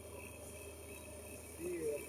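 Low, steady outdoor background with a short, faint voice briefly near the end.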